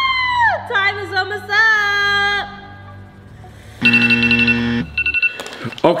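Edited-in game-show sound effects: a held high tone that slides down, a short wavering jingle, then a steady one-second buzzer about four seconds in as the countdown reaches zero. A few clicks follow near the end.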